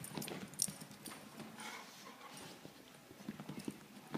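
A quick, uneven run of clicks and knocks, the sharpest just before a second in.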